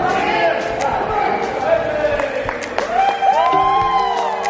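Long, rising-and-falling shouted yells over sharp thuds of kicks and feet landing during a taekwondo sparring exchange, with steady music notes coming in near the end.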